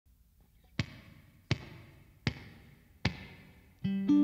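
A count-in of four sharp clicks about three-quarters of a second apart, each ringing briefly in the room. The band's first guitar chord comes in just before the end.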